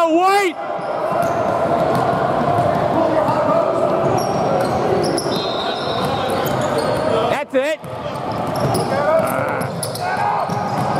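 Basketball game on a hardwood gym floor: the ball bouncing on the dribble amid voices echoing in the large hall, with two short high squeaks, one at the start and one about seven and a half seconds in, typical of sneakers on the court.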